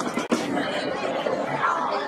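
Spectators chattering, several voices overlapping, with two sharp clicks in the first third of a second.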